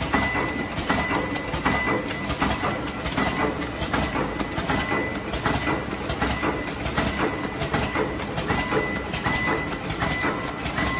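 Vertical form-fill-seal powder packing machine with an auger filler running, cycling steadily through forming, filling and sealing pouches: a continuous clatter of clicks and knocks, with a high whine that keeps starting and stopping.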